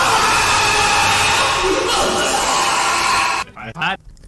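A loud, heavily distorted noise blast from a YouTube Poop edit, with a voice buried in it, lasting about three and a half seconds and cutting off suddenly.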